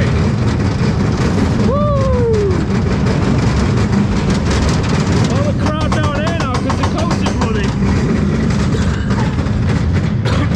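An SBF Visa steel roller coaster running along its track, with a loud steady rumble of wind and track noise on the on-ride camera. The rider's voice cuts through: a long falling 'whoa' about two seconds in, and wavering laughing whoops around six to seven seconds.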